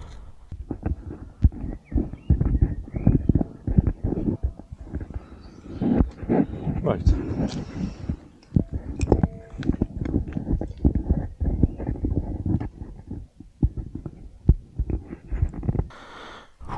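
Handling noise on a 360 camera's own microphone: irregular bumps, knocks and rubbing as the camera is moved and remounted.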